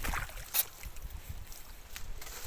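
Shallow water sloshing faintly with one short, sharp sound about half a second in.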